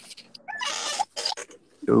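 Short, breathy, noisy vocal sounds coming through as a guest joins the live video call, then a man's voice saying "여보세요" (hello) just before the end.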